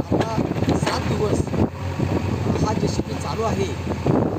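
A man talking in Marathi, over a steady low background hum.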